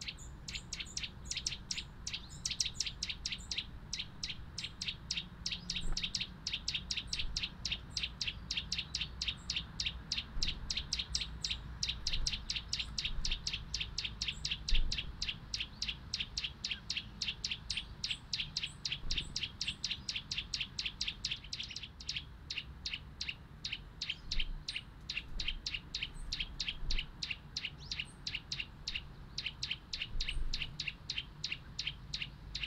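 Garden songbird calling in a fast, steady run of short high chips, about four or five a second, with a few higher notes over the top.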